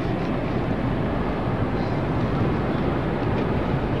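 Steady crowd noise from a large audience in a hall, a dense even sound as loud as the speech around it.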